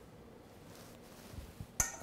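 Quiet, then a few soft knocks and a single sharp clink near the end as a metal mesh strainer is lifted off a glass measuring cup of strained cream.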